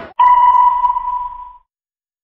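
A single electronic beep tone that starts sharply and rings out, fading away over about a second and a half.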